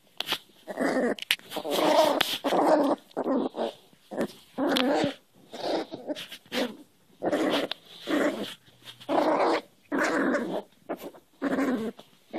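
Cairn terrier puppy play-growling in a string of short bursts, roughly one a second, while wrestling with a person's hand.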